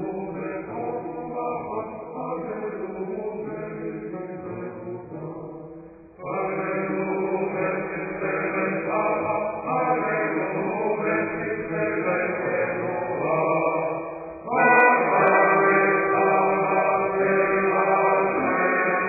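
Background music of chanted singing, held notes sung in long phrases; a new, louder phrase enters about six seconds in and again about fourteen seconds in.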